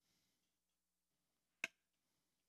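Near silence, broken by a single sharp click about one and a half seconds in.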